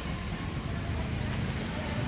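Steady outdoor street noise: a low traffic rumble with an even hiss over it, and no distinct events.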